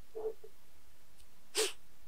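Faint steady hiss with a small soft blip near the start and, about one and a half seconds in, a brief hissy sniff through the nose.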